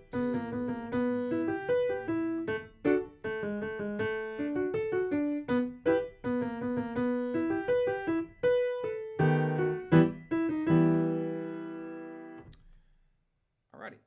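Piano keyboard played with both hands: a simple E minor melody over left-hand chords in a steady two-beat count, a run of separate notes ending on a long held chord about eleven seconds in that cuts off sharply about a second and a half later.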